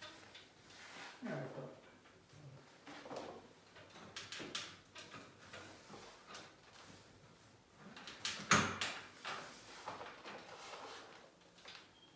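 Hands smoothing pasted wallpaper onto a wall: intermittent rustling and rubbing of the paper against the wall, with one louder rustle about two-thirds of the way through.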